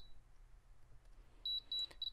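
Spektrum DX6i radio transmitter beeping as its scroll roller and button are worked through the menu: three short, high-pitched beeps in quick succession about one and a half seconds in.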